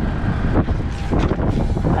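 Diesel truck engine idling with a steady low rumble, with wind buffeting the microphone.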